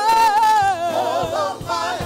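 Women singing a gospel worship song into microphones, with several voices and a lead voice wavering in vibrato.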